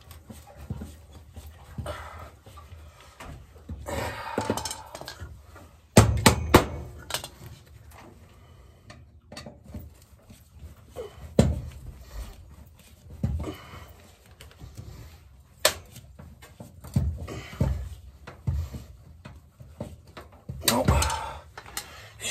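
A screwdriver working at a stuck screw in a gas boiler's sheet-metal burner panel, with scraping and irregular sharp clanks of metal on metal, the loudest about six seconds in. Heavy breathing from the effort comes between the clanks. The screw is seized and will not come out.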